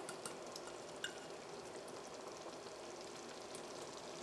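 Semolina, ghee and water mixture just come to the boil in a stainless steel pan, simmering faintly and steadily with a few tiny ticks.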